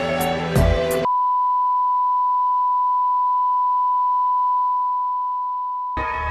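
Music with a beat cuts off about a second in, giving way to a steady, single-pitch electronic beep tone, like a test tone, held for about five seconds and fading slightly near the end.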